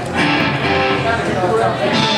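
Amplified rock band's electric guitars starting up loudly just after the start and playing on.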